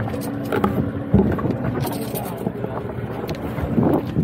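Boat engine running steadily, with a couple of knocks, the loudest about a second in and another near the end.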